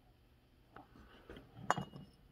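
Faint clicks and a short metallic clink as a bare chainsaw cylinder is handled and lifted off a workbench, the loudest clink near the end with a brief ring.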